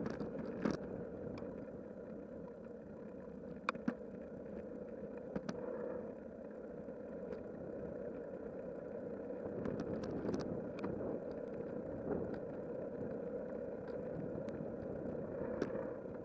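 Riding noise from a bicycle picked up by a handlebar camera: a steady rush of wind and tyre rolling on pavement, with occasional small clicks and rattles from the bike.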